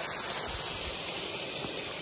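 Steady rushing of a small waterfall: an even hiss of falling water with no change through the moment.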